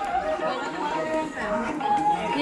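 Voices of people chattering among a crowd, with music playing underneath.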